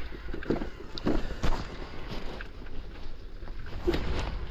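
Wind rumbling on the microphone as a mountain bike rolls along a rough dirt path, with scattered knocks and rattles from the bike.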